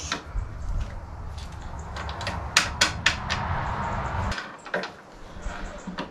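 Clicks and clatter from handling a Bosch GKT 18V-52 GC cordless plunge saw as its bevel angle is adjusted, with a cluster of sharp clicks near the middle. The saw is not running; its battery is not fitted.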